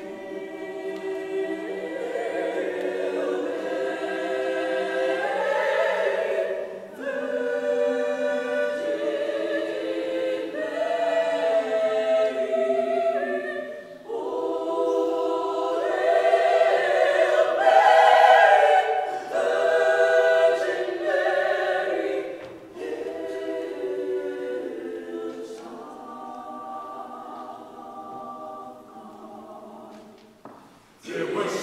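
Mixed choir singing unaccompanied in sustained chords, phrase by phrase with short breaths between, swelling to its loudest a little past the middle and growing softer toward the end.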